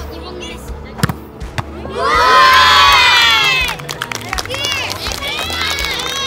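A group of children cheering and shouting: a loud burst of many high voices together lasting nearly two seconds, then scattered single shouts. A single sharp knock comes about a second before the cheer.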